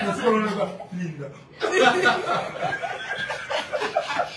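People talking and chuckling, with a brief lull about a second and a half in.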